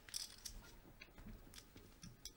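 Faint, scattered clicks of poker chips being handled at the table as a raise is put in.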